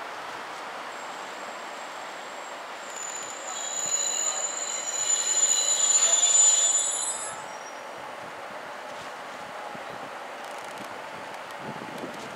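High-pitched steel wheel squeal from an approaching locomotive-hauled train on curved track. It builds from about a second in, is loudest from about four to seven seconds in, then stops, leaving a steady background hiss.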